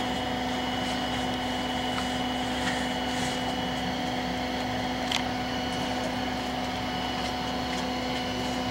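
Steady mechanical hum at a constant pitch, with a few faint clicks, the clearest about five seconds in.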